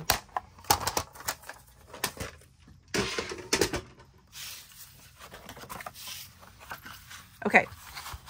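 Paper or card being cut and handled on a work surface: sharp clicks and snips, a dense cluster of them about three seconds in, then a few seconds of soft rustling scraping.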